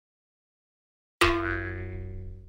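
A single ringing, pitched sound effect that strikes suddenly about a second in after silence and fades away over a second or two.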